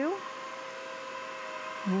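Bissell CrossWave Cordless wet/dry floor cleaner running, its motor giving a steady whine as it is pushed over a hard floor.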